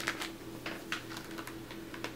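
A handful of light, separate plastic clicks and crackles as a clamshell pack of wax melts is handled and lifted up to be sniffed.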